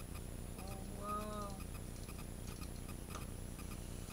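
Faint, rapid, even clicking of a small tin wind-up robot's clockwork as it is handled and wound, over a steady low hum. A short hummed voice sound comes about a second in.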